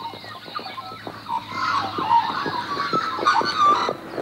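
Harness pacer's hoofbeats and the rattle of its sulky on a dirt track, a quick irregular clatter of knocks that grows louder after about a second and a half.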